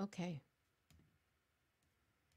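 A woman says "okay", then a single soft click sounds about a second in, with a couple of fainter ticks near the end, in a quiet small room.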